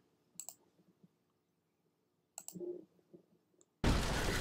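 A few sharp computer-mouse clicks, a quick pair about half a second in and another pair about two and a half seconds in, made while trying to restart a stalled video stream. Near the end, loud audio from the anime episode abruptly cuts back in.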